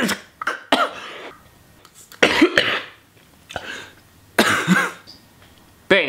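A man coughing in several separate bursts, spaced about a second or more apart.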